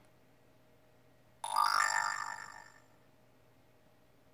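Smartphone notification chime from a Moto G6's speaker, sounding once about a second and a half in: several tones at once that fade out over about a second and a half, as a new notification arrives.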